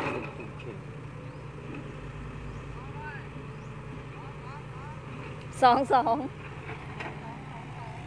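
Heavy diesel engines of dump trucks and an excavator running with a steady low hum, with a loud shout of "two, two" about five and a half seconds in.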